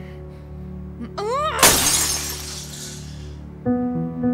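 A short rising cry, then a loud shattering crash of something breakable smashing, its noise dying away over about a second and a half, over held background music chords.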